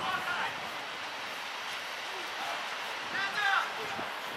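Short distant shouts of voices across an outdoor football pitch, one near the start and a louder call about three seconds in, over a steady outdoor background hiss.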